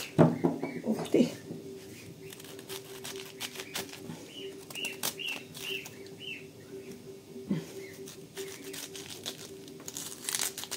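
Knife cutting around the core of a head of white cabbage, the crisp leaves crunching and snapping in a string of short irregular clicks. A faint steady hum runs underneath.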